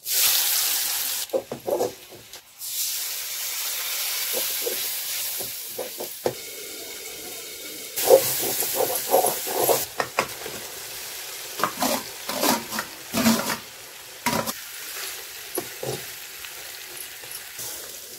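Chopped onions dropped into hot oil in a metal kadhai, sizzling at once, with a metal ladle scraping and clicking against the pan as they are stirred. About eight seconds in, a fresh burst of sizzling as boiled eggs and potato pieces go into the pan.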